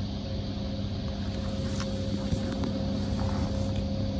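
Steady low hum with two constant tones and a few faint light clicks: the background of a large hangar hall.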